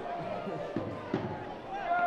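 Faint voices of players and spectators at a football ground, picked up by the pitchside microphone. A faint steady tone comes in near the end.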